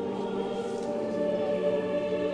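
A choir singing a church hymn in long held notes.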